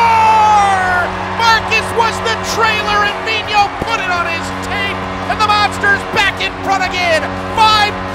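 A hockey play-by-play announcer's long, drawn-out "score!" call, falling in pitch and ending about a second in. After it comes music: a steady low sustained tone under short, bending melodic phrases.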